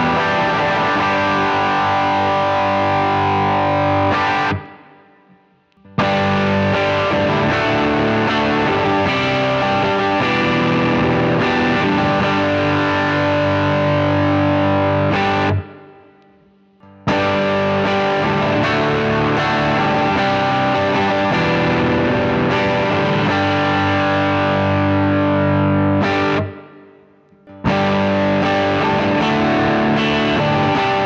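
Enya Nova Go Sonic carbon fibre electric guitar played through a Fender Bassman amp model with a little distortion, ringing out chords. The playing stops three times for about a second, letting the sound die away, as it moves through bridge pickup, neck pickup and both-pickup settings.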